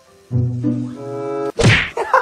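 Background music holding low, sustained notes, broken off about one and a half seconds in by a sudden loud thunk.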